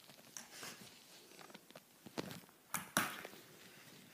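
Metal crutches and a bare foot thudding on a rug-covered floor as someone walks on crutches: a handful of soft knocks, the loudest about three seconds in.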